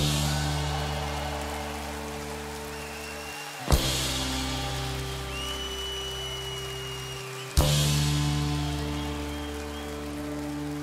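A live rock band hits a chord together with a drum and cymbal crash three times, about four seconds apart. Each time the chord and the cymbal are left to ring and fade out slowly.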